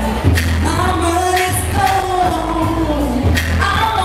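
A woman singing live into a hand-held microphone, her voice gliding and holding notes over backing music with a deep bass and a few sharp drum hits.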